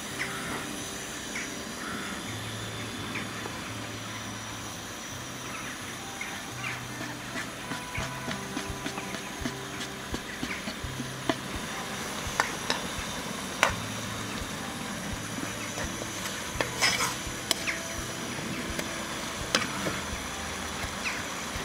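Seafood in tomato liquid simmering and sizzling in a frying pan on a portable gas stove, with a slotted metal spoon stirring and clinking against the pan now and then.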